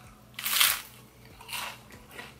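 Crunch of a bite into a puffed rice cake, followed about a second later by a second, softer crunch as it is chewed.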